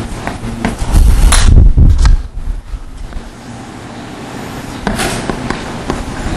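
Chalk tapping and scraping on a blackboard as a figure is drawn, with scattered sharp clicks and a run of heavy, dull thumps from about one to two seconds in.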